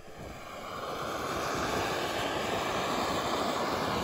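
Handheld gas torch flame burning through woven landscape fabric, a steady rushing noise that builds over the first second and then holds.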